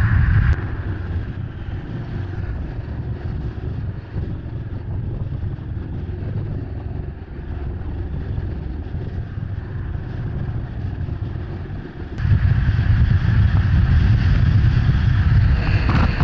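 Wind rushing over the microphone and road noise from riding along at speed. It is a steady, low rumble that drops a little just after the start and grows much louder about twelve seconds in.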